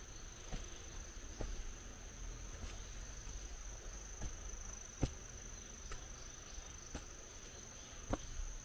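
An insect keeps up a steady, high-pitched trill over quiet woodland ambience. Footsteps on stone steps sound about once a second, the loudest about five seconds in.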